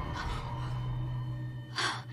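A woman's sharp gasp near the end, after a fainter breath just after the start, over a low steady drone.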